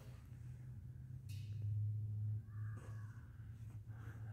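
Quiet room tone with a steady low hum, and a faint short hiss like a breath about a second in.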